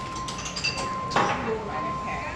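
Busy market crowd with voices, a few light metallic clinks and one sharp knock just over a second in, over a steady high tone.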